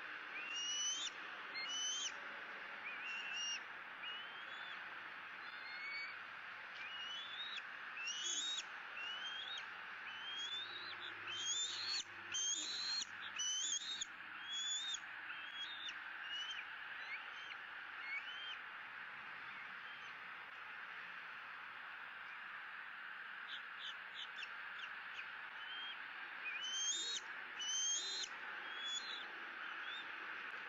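Bald eagles calling: bouts of short, high, rising chirps, clustered near the start, through the middle and again near the end, over a steady background hiss.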